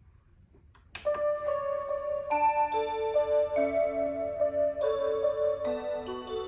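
Seiko Symphony melody wall clock playing an electronic tune. After about a second of near silence the melody starts abruptly, with clear held notes stepping from one pitch to the next every fraction of a second.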